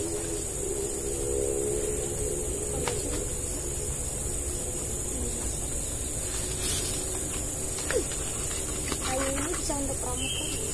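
Insects giving a steady high-pitched drone, with faint voices talking in the background.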